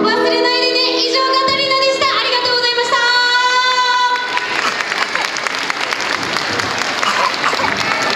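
A female voice holds the last notes of a pop song over backing music, which ends about halfway through. The audience then applauds.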